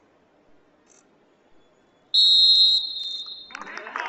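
Referee's whistle: one long, high blast about halfway in, loud at first and then weaker, signalling the kneeling players to stand. Voices start up just before the end.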